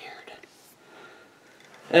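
A woman's faint breath in a pause in her talk, with her speech starting again right at the end.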